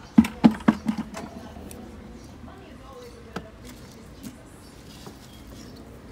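A quick run of about five sharp knocks in the first second, then a few faint single clicks over a low background hum.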